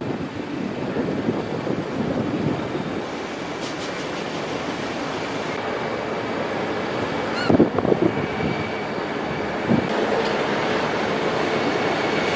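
Steady mechanical rumble and hiss of container-terminal machinery and vehicles, with a brief louder clank and short squeal about seven and a half seconds in and another knock near ten seconds.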